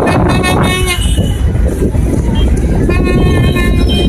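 Vehicle horns tooting amid street and crowd noise, with a held, steady-pitched horn near the end, over a steady low rumble.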